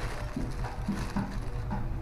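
Clear plastic parts packaging rustling and crinkling as hands turn and open it, over a steady low background hum.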